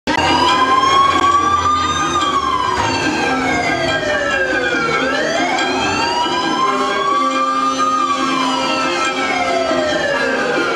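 A wailing siren, played as a show sound effect, that slowly rises and falls in pitch twice.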